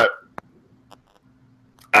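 A man's speech trails off into a pause broken by one short mouth click about half a second in, over a faint low hum; speech starts again at the very end.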